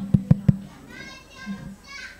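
A quick run of dull thumps, five or six within about half a second, followed about a second in by a short high-pitched voice-like sound.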